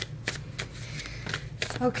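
A deck of tarot cards shuffled by hand, the cards slapping against each other in an irregular run of short, soft clicks.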